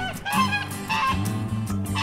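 Upbeat song with a steady bass line, with a white domestic goose honking over it a few times in the first second or so.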